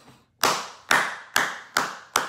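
A man clapping his hands slowly and evenly, four claps about two a second, each a sharp smack with a short fading tail.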